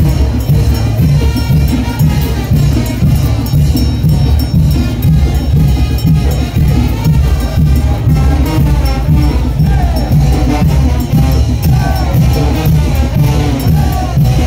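Live brass band playing chinelo brinco music: a steady beat of about two drum strokes a second under a brass melody, loud and continuous.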